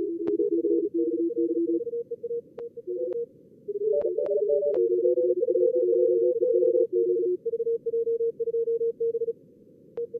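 Fast Morse code (CW) from a contest logger's practice-mode simulator: several keyed tones at different pitches overlapping, as callers on two radios send at once. A few sharp clicks break in during the first half.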